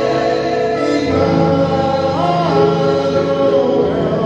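Gospel worship singing: a man's voice amplified through a handheld microphone, holding long notes.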